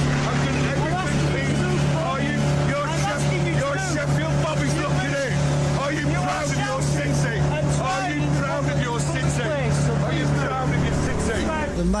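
An engine drones steadily at a low, even pitch while a crowd of voices shouts and talks over it, no single speaker clear.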